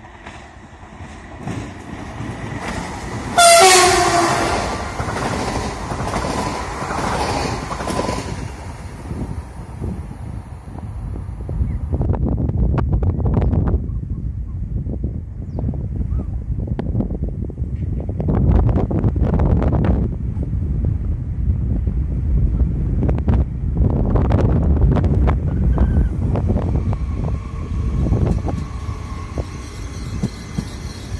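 A regional train's horn gives one loud blast about three and a half seconds in, with a fainter tone lingering for a few seconds. Then the low rumble and wheel clatter of a passenger train on the rails build through the second half as it approaches and passes.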